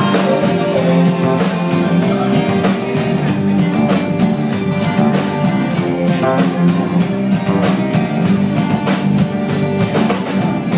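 Live rock band playing an instrumental passage without vocals: strummed guitar, electric bass and a drum kit keeping a steady beat.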